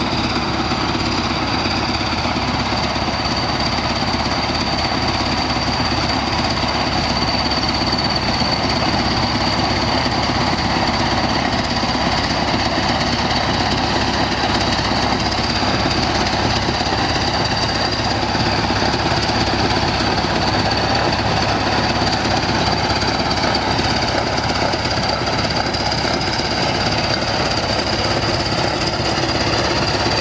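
Diesel engine of a tractor-bulldozer running steadily with a fast, even clatter as the machine drives.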